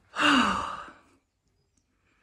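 A woman's long, breathy sigh, her voice falling in pitch, lasting about a second.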